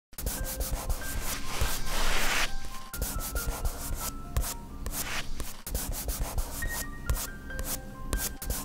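Logo intro sting: a fast beat of sharp clicks with short bell-like tones over it, and a noisy swell about two seconds in.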